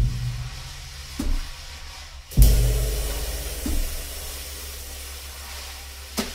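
Vintage 1969 Gretsch Round Badge drum kit with 1940s K Zildjian cymbals, played sparsely. There is a drum hit about a second in, then a loud bass drum stroke with a cymbal crash a little past two seconds, whose wash rings and fades, then one more drum hit near four seconds.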